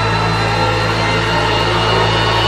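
Eerie ambient background music: a steady low drone with a hiss over it.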